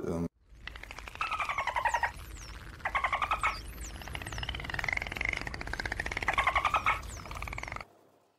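A man's voice garbled by a buzzy distortion effect, so that no words can be made out, with odd high falling chirps over it. The masking covers his answer about his personal details and where he is from.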